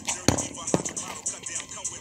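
Boxing gloves smacking focus mitts, two sharp punches about a quarter and three-quarters of a second in, over hip hop music with rap vocals.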